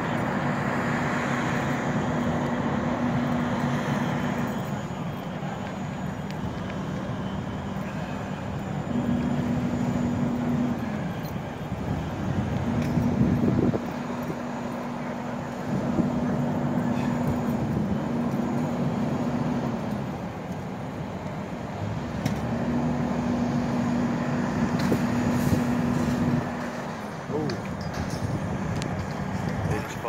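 Vehicle engine noise at a fire scene: a steady low hum that cuts in and out four or five times, each stretch lasting a few seconds, over a constant rumble, with voices in the background.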